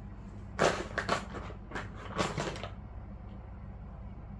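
Crinkling plastic rustle of a wet-wipe pack as a wipe is pulled out and unfolded: several short crinkly bursts over about two seconds.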